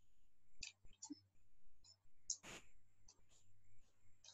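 Near silence with a few faint computer-mouse clicks, the clearest about halfway through.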